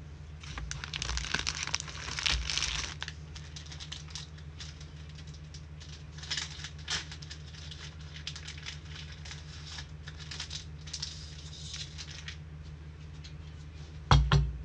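Trading-card pack wrappers crinkling and tearing as packs are handled and opened, in scratchy bursts that are loudest in the first three seconds, with shorter flurries later. A steady low electrical hum sits underneath.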